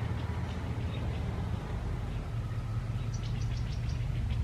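Outdoor garden ambience: a steady low rumble with faint, quick runs of high bird chirps, one group near the start and another in the last second.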